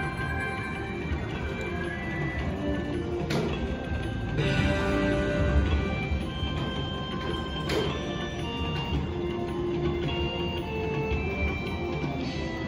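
Spielo 'Wild Life' video slot machine playing its free-spin bonus music: a run of short electronic chiming notes at changing pitches, with two sharp clicks partway through.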